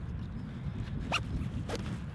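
Nylon webbing strap on a Lowepro Whistler BP 450 AW backpack being pulled through its buckle, a continuous rasp as the strap is cinched tight around a tripod to lock it in place.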